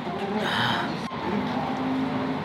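A short slurp of tonkotsu ramen broth from a spoon about half a second in, over voices in the background.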